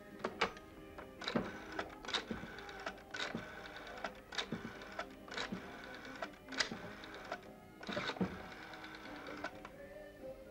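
Telephone being dialled: a series of sharp clicks, roughly one a second, over quiet background music with steady held tones.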